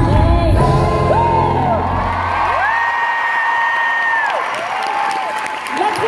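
Live pop backing music with a woman singing into a handheld microphone. The bass fades out about halfway through, leaving long held sung notes over a whooping, cheering crowd.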